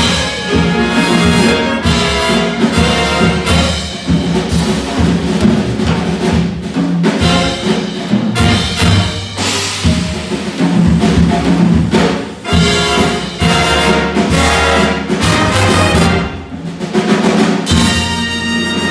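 A jazz big band playing live: trumpets, trombones and saxophones over a rhythm section of guitar, upright bass, drum kit and congas.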